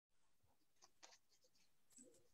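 Near silence: faint room tone with a few soft clicks or rustles about a second in.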